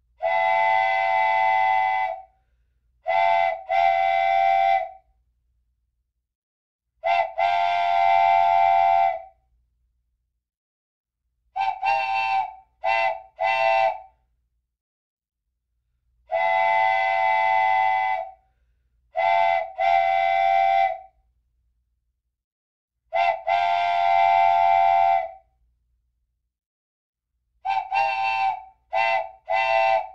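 A multi-tone whistle sounding a chord in long blasts of about two seconds and groups of short toots, with silences between. The same sequence of blasts starts over about halfway through, as a repeating loop.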